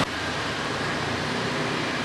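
Steady outdoor background noise: an even hum and hiss with no distinct events.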